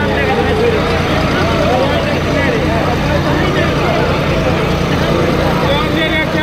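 A John Deere 5210 tractor's diesel engine running steadily with an even low pulse, under the overlapping voices of a crowd.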